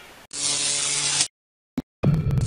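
A buzzing hiss, an editing sound effect about a second long, starts abruptly just after the game audio cuts out and stops suddenly, leaving dead silence with a faint blip near the end.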